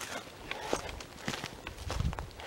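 Footsteps of a hiker walking along a trail, a run of short steps one after another.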